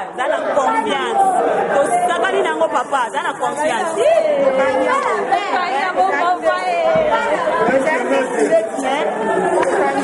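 Several women's voices talking over one another close up, an overlapping chatter with no single clear speaker.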